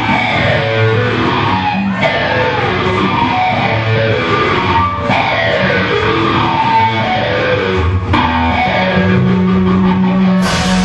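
Live rock band playing: electric guitars, bass and drum kit, loud and steady through a club PA.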